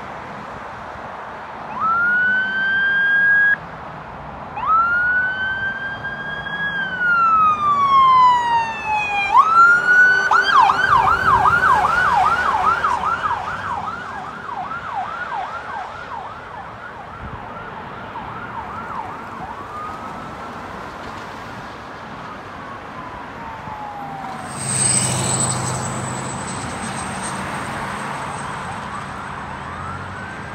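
An ambulance's electronic siren sounds a few long rising-and-falling wails, switches to a fast yelp, then fades away as it passes. Near the end a swell of traffic noise carries a thin high whine, and another wail starts right at the end.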